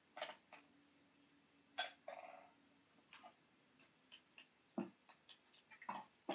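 Light, faint clicks and taps of small clay and ceramic teaware being handled on a bamboo tea tray, including the lid of a clay teapot, spread sparsely through the stretch.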